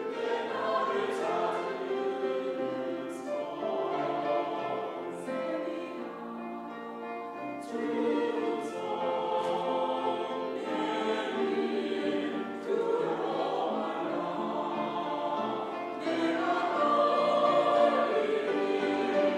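Mixed church choir singing an anthem with grand piano accompaniment. The choir comes in right at the start and grows louder about two seconds before the end.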